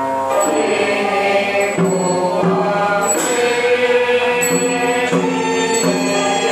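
Group of voices chanting a Chinese Buddhist liturgy in sustained, melodic unison, moving from note to note. Struck percussion marks the beat about once a second, some strokes leaving a high ringing tone.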